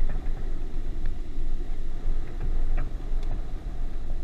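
Wind buffeting an outdoor camera microphone: a loud, gusty low rumble. A few faint sharp knocks from the tennis rally, ball hits and bounces, come through near the end.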